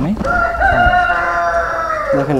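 A rooster crowing: one loud, long call that starts about a quarter second in and is held for nearly two seconds, dipping slightly at the end.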